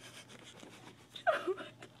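Faint rustling and rubbing of a foam flip-flop and its plastic tag and tie as it is worked onto a bare foot, with one short, falling vocal sound a little past halfway.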